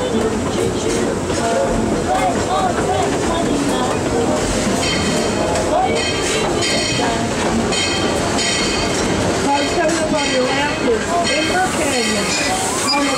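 Steady running noise of a narrow-gauge steam train's open passenger car rolling along the track. From about halfway through, a high-pitched ringing tone comes and goes over it.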